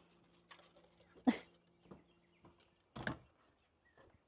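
Two short knocks, about one and three seconds in, over a quiet background with a faint low steady hum that fades out shortly before the second knock.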